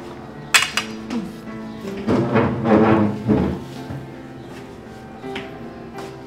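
Background music with sustained tones, and a sharp clink of a metal fork against a plate about half a second in, with a fainter clink near the end.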